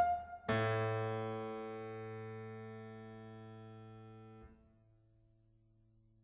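Sparse solo piano music: a single sharp high note, then a loud chord struck about half a second in that rings and slowly fades over about four seconds. The chord is damped suddenly, leaving one faint low note sounding.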